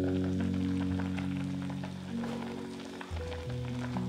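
Background music over a clay donabe pot of kimchi stew simmering, with many small pops and crackles of bubbling.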